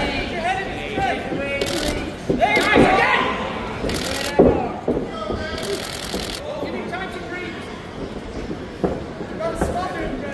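Amateur boxing bout heard from ringside: voices calling out from around the ring, with several sharp smacks and thuds of gloved punches and footwork on the ring canvas, the loudest about four and a half seconds in.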